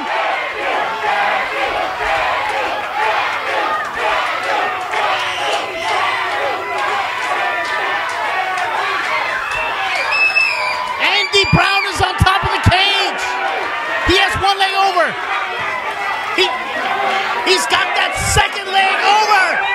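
Wrestling crowd cheering and shouting, many voices at once, with louder individual yells about eleven to fifteen seconds in.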